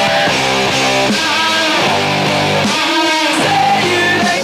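Rock music with guitars playing, no singing: a song recorded off FM radio onto cassette tape.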